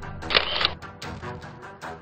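Background music with a single camera shutter click sound effect about half a second in.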